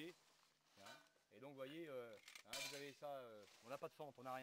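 A man's voice speaking quietly, with a short hiss about two and a half seconds in.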